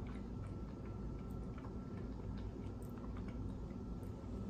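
Faint chewing with small, irregular mouth clicks, over a steady low hum and a thin, steady high tone.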